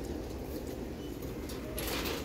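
Steady low background rumble of a large shop's room noise, with a brief rustle near the end.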